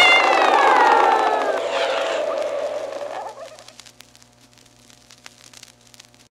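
A cat yowl sound effect on a vinyl record, its pitch sliding downward as it fades away over about three seconds. After that, only the faint crackle and clicks of the record's surface noise remain until the recording ends.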